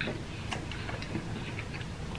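Close-miked eating sounds: chewing with the mouth closed, a scatter of soft wet clicks and small smacks.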